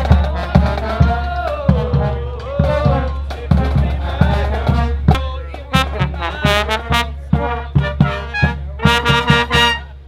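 Marching band playing: trumpets and trombones over steady drum hits.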